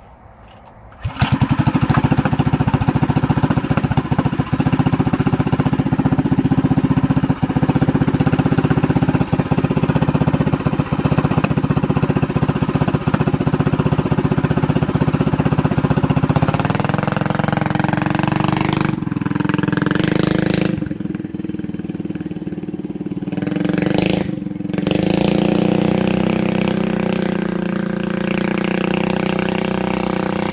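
Doodlebug mini bike's Predator 212 single-cylinder engine starts about a second in and runs loud and steady close by. From about 16 seconds in it is ridden away, its note changing with the throttle, rising and falling, and getting quieter near the end.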